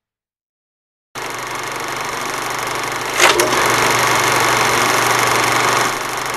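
Film projector running: a steady mechanical whirr with a low hum that starts suddenly about a second in, with a loud double click a little past the middle.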